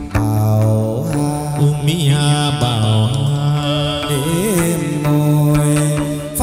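Hát văn (chầu văn) ritual music: a sustained, bending melodic line over a held low tone, with occasional sharp percussion clicks.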